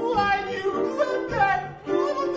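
A voice singing an improvised song with sliding notes, over live instrumental accompaniment.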